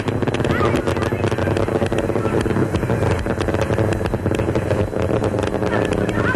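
Space Shuttle Challenger's solid rocket boosters and main engines in ascent: a steady, loud, crackling rumble, with the main engines back at full throttle after throttle-up.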